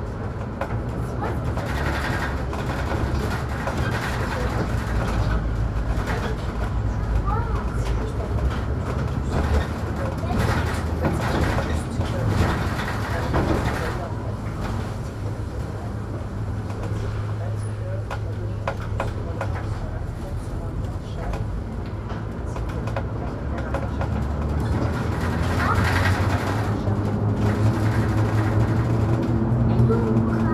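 Inside a Mercedes-Benz Citaro G articulated city bus under way: steady low engine and driveline hum with rattles from the body, the engine note climbing near the end as the bus accelerates.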